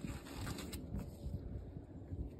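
Faint rustling of thin disposable gloves being pulled onto the hands, with a couple of short clicks about half a second in.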